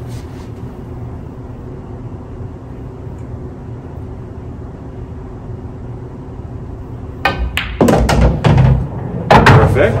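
A pool stroke about seven seconds in: the cue tip strikes the cue ball with a sharp click, and the balls knock together as the 14 ball is stun-shot into a pocket. Thunks and rumbling follow as the ball drops and rolls through the table. Before the shot there is only a steady low hum.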